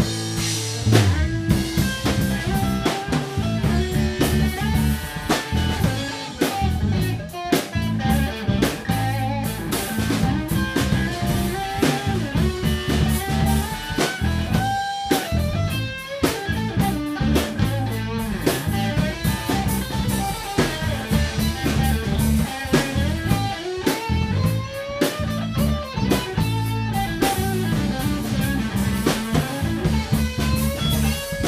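Live rock band playing an instrumental passage: electric guitar lead with bending notes over electric bass and a drum kit.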